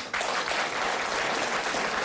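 Studio audience applauding, a dense steady clapping that sets in right after the speaker's line and carries on as he starts talking again near the end.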